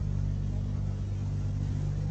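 Steady low hum with an even layer of hiss: the background noise of the speech recording, with no other event standing out.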